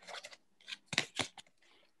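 A few short clicks and crackles of a paper picture card being handled close to the microphone.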